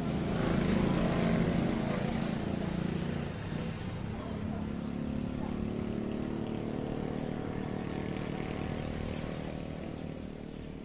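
A motorcycle engine running close by, loudest in the first three seconds, then running steadily and fading near the end.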